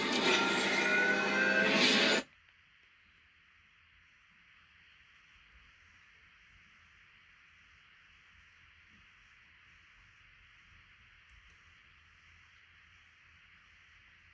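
Music and effects from a video playing on a screen, loud and layered with rising tones, cut off suddenly about two seconds in. After that, near silence with a faint steady hiss.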